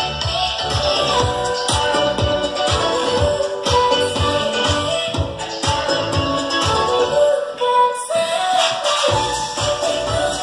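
Music with a steady beat played through DIY distributed-mode panel speakers, a balsa panel and a polystyrene panel driven by audio exciters. The bass beat drops out briefly about three-quarters of the way through.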